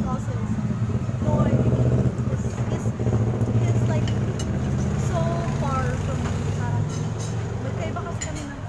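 A motor vehicle's engine running steadily close by, a loud low hum under women's talk and laughter.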